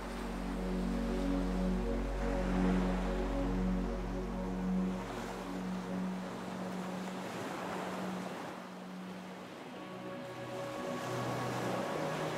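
Ocean waves washing in and out, the surf rising and falling, under slow sustained chords of background music.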